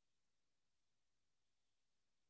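Near silence: only a very faint, steady hiss.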